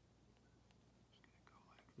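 Near silence: room tone, with faint whispered or muttered speech in the second half.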